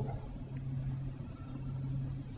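Faint room tone with a steady low hum, picked up through a desk microphone during a pause in speech.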